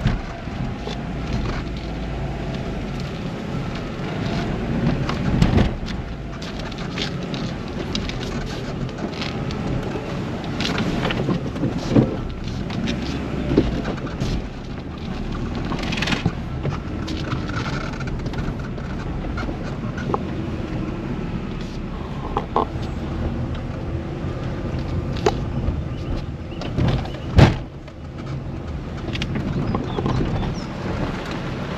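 Cabin noise of a small car driving slowly over a rough dirt track: a steady low rumble with frequent knocks and rattles as the wheels go over bumps, and a few sharper thumps, the strongest near the end.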